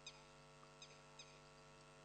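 Near silence: a steady low hum with a few faint, short, high chirps in the first half.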